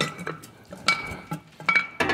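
Rusty truck spring brake chamber (parking-brake piggyback) shaken by hand, its broken internal power spring clanking against the steel housing in a few irregular metallic knocks with a ringing tone. The rattle is the sign that the parking-brake spring inside has snapped.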